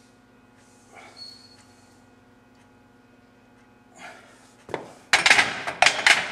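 A faint steady hum, then near the end a run of loud, sharp clanks as iron dumbbells are set back onto a metal dumbbell rack.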